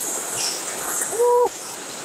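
A bird gives one short hoot a little over a second in, over a steady high hiss.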